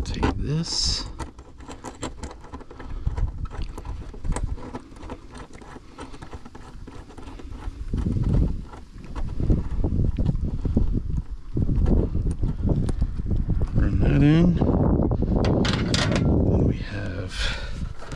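Close handling noise: rubbing and rustling with many small clicks as hands fit a bolt, washers and a nut into a hole in a truck panel. The rubbing gets heavier and louder about halfway through.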